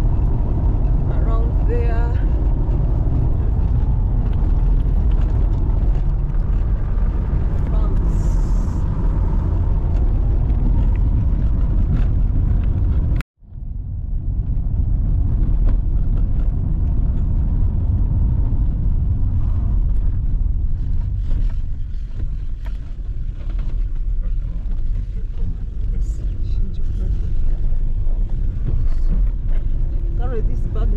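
Road noise inside a moving car's cabin: engine and tyres on an unpaved dirt road, a steady low rumble. The sound cuts out for an instant a little before halfway, then resumes.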